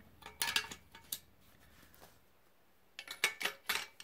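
Metal handle sections of a folding survival shovel clinking against each other as they are handled and screwed together: a few clinks in the first second, a lull, then a quick run of clinks near the end.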